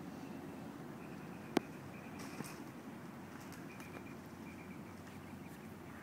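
Outdoor backyard ambience: a steady low rumble with a faint, high chirping repeated in short runs, and one sharp click about a second and a half in, followed by a softer one.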